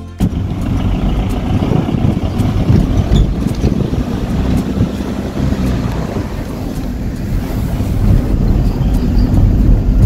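Car driving, heard from inside the cabin: a steady low rumble of engine and road noise, with wind rushing over the microphone.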